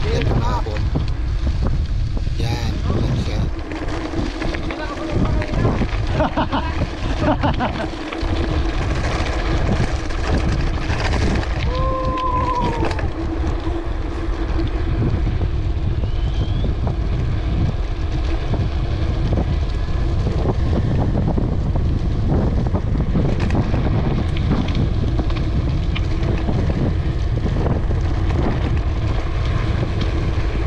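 Wind buffeting the microphone and tyres rumbling over a gravel and concrete road as a mountain bike coasts fast downhill. A brief arched tone sounds near the middle.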